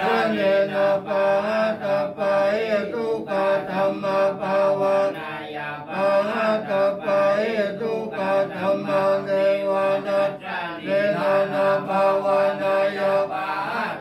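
Theravada Buddhist monks chanting Pali verses in a steady, nearly single-pitch monotone, syllable after syllable, with short breath pauses about six and ten and a half seconds in.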